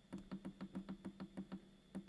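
Faint, rapid clicks, about seven a second, from the controls of an RS918 HF transceiver being worked to change the power setting, which stays stuck at 50 milliwatts. A low steady hum runs underneath.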